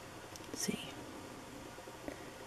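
A brief, soft whispered vocal sound from a woman about half a second in, over faint steady hiss.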